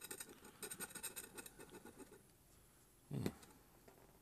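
Scratcher tool rubbing the latex coating off a scratch-off lottery ticket in quick, faint short strokes, stopping about two seconds in.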